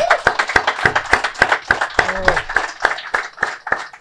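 A small live audience applauding: many separate hand claps in a dense, uneven run that stops shortly before the end.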